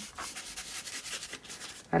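Stiff flat bristle brush scrubbing acrylic paint onto thick paper in quick, short strokes: a dry, scratchy rubbing.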